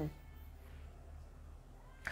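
The tail of a drawn-out spoken word falling in pitch, ending just after the start, then faint room tone with a steady low hum.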